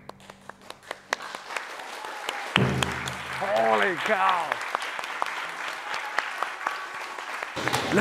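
Small audience clapping, the separate claps distinct.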